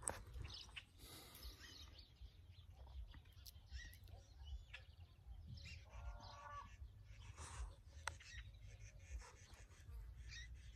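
Faint, scattered bird chirps and calls over a low rumble, with one longer call about six seconds in.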